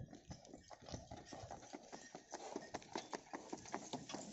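Hooves of a pair of bullocks clip-clopping on a paved road as they walk, pulling a cart loaded with stones: irregular sharp clicks several times a second, getting louder in the second half.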